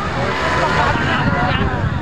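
Underbone motocross motorcycles racing on a dirt track some way off, their engines running steadily under the chatter of the crowd.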